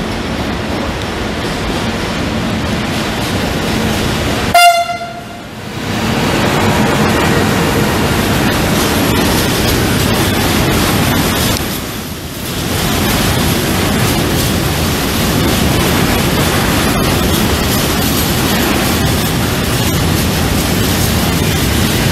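Container freight train hauled by an FS E.652 electric locomotive passing, with a steady rumble and clatter of wagon wheels on the rails. One short, loud horn blast sounds about four and a half seconds in.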